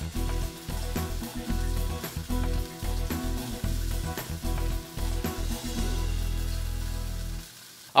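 A thick burger patty sizzling as it fries in olive oil in a nonstick pan, with steady background music; both drop away shortly before the end.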